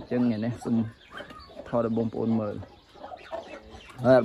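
Chickens clucking in a poultry pen, in the gaps between a man's talking.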